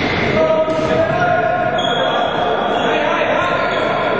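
Indoor floorball game play in a large sports hall: shoes squeaking on the hall floor and the ball and sticks in play, mixed with players' voices, all echoing in the hall.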